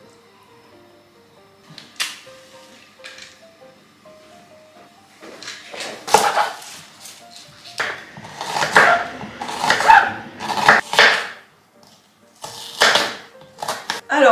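Quiet background music with a simple stepping melody. From about five seconds in, a kitchen knife slicing a red onion on a wooden cutting board, with a run of sharp cutting strokes and thuds against the board, about two or three a second, and a few more strokes near the end. The knife strokes are the loudest sound.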